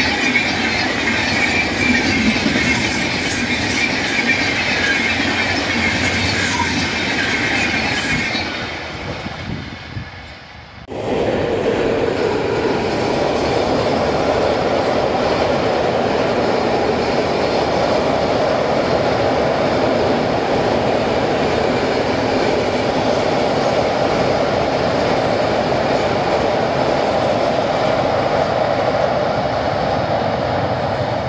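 Passenger coaches passing close at speed, their wheels on the rails giving a loud, steady noise with a high-pitched hiss. After a cut about ten seconds in, an electric-hauled passenger train running steadily across a steel girder bridge, lower in pitch.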